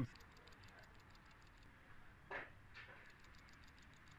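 A plastic PCV valve being shaken by hand, its freed internal plunger rattling in a quick run of faint clicks, several a second, with one louder knock a little past halfway. The rattle is the sign that the valve is now unclogged after cleaning.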